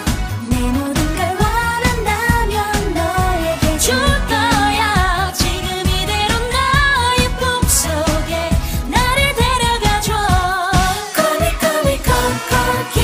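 Korean pop song cover: a sung vocal melody over a backing track with a steady beat.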